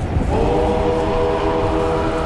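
Dramatic background score: a horn-like chord of several steady pitches comes in just after the start and holds, over a constant low rumble like a wind effect.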